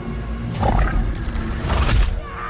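A woman's anguished scream over loud horror-film music and sound effects, with a deep rumble underneath and sudden hits about a quarter of the way in, halfway through and near the end.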